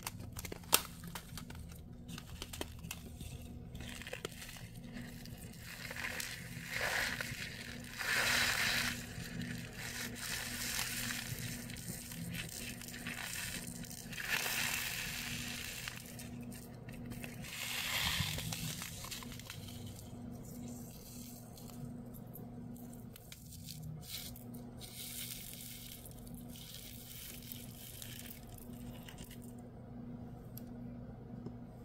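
Small clear plastic zip-lock bags crinkling and rustling as they are handled and opened, with several louder stretches of crinkling and a single sharp click about a second in. Near the end small resin flower charms are tipped from the bag into a little plastic pot. A steady low hum runs underneath.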